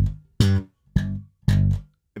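Electric bass played slap style: four short notes, a thumb slap, a finger pluck, then two thumb slaps, each with a sharp percussive attack and a deep note that dies away quickly.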